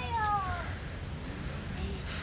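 A young child's high-pitched squeal that falls in pitch, lasting under a second right at the start, over a steady low rumble.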